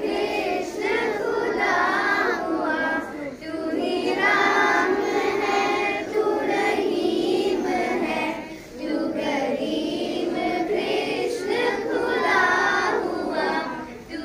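A group of children singing a song together, with short breaks between phrases about three and nine seconds in.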